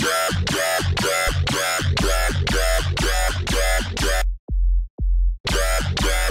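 Dubstep wobble bass from the Xfer Serum synth, pulsing about twice a second over a deep sub bass. About four seconds in, the wobble drops out for about a second and only the low sub is heard, then the wobble returns.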